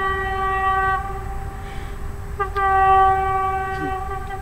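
Distant vehicle horn giving two long, steady blasts: the first fades about a second in and the second starts a little past halfway. Whether it is a train's horn or a truck's can't be told, as it is pretty far away.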